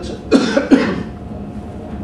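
A man coughing twice in quick succession, close to the microphone.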